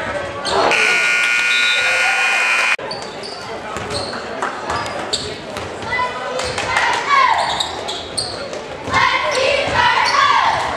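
Gym buzzer sounds a steady electric tone for about two seconds and cuts off abruptly. After it come spectators' voices and a basketball bouncing, echoing in a large gymnasium.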